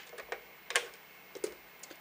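A few light plastic clicks and ticks as the white plastic button bezel ring of a Philips Wake-up Light is lifted off the lamp's housing, the clearest just under a second in.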